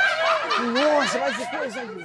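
A man laughing in short, repeated, pitched vocal bursts, with a second, higher voice over it early on.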